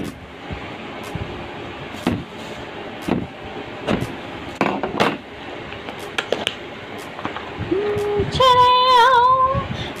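Cardboard mailer box being opened by hand: scattered clicks, taps and rustles of cardboard and paper. Near the end a woman's voice sings a few drawn-out notes.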